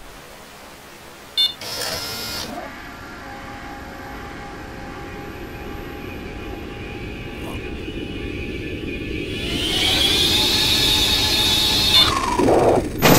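Low, eerie ambient drone from a horror film's soundtrack, with faint held tones, swelling into a louder hissing rise near the end. A sharp click and a short burst of noise come about a second and a half in.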